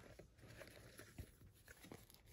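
Near silence, with a few faint ticks of paper and craft supplies being handled.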